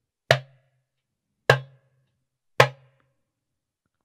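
Darbuka (goblet drum) struck three times, about a second apart, with the fingertips landing on the head: the drum's mid-tone stroke, a sharp plosive pop with a short ring that dies away quickly.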